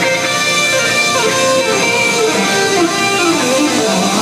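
Live rock band playing loudly, electric guitars to the fore, with a melodic line stepping downward through the second half, heard from the audience.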